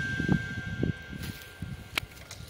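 Faint rustling and soft low thuds from walking with a handheld camera along a garden path, while a held note of background music fades out about three-quarters of the way through.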